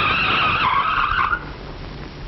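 Car tyres screeching in a hard skid for about a second and a half, then cutting off.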